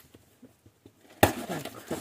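Near quiet for about a second, then a sudden knock and scraping as a scissor blade starts along the packing tape on a cardboard box.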